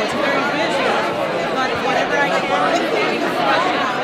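Crowd chatter: many people talking at once in pairs and small groups, a steady, dense hubbub of overlapping voices.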